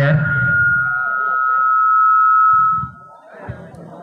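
A steady high-pitched tone held for nearly three seconds, sinking slightly in pitch and swelling a little before it cuts off suddenly. A loud voice sounds over its first moment.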